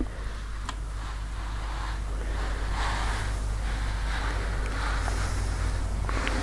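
Household iron pushed along a strip of cotton fabric on a padded pressing board: a soft swishing that swells and fades about once a second, over a steady low hum.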